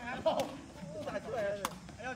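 Two sharp knocks of a sepak takraw ball being kicked, about a second and a quarter apart, under voices talking.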